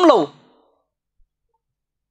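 A man's voice trailing off with a falling pitch at the start, then near silence.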